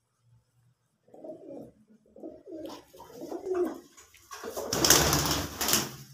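Domestic pigeons cooing: a run of low, rolling coos from about a second in. Near the end a loud burst of rustling noise covers them.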